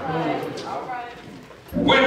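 A man preaching into a microphone: his voice trails off into a short pause, and he starts speaking again near the end.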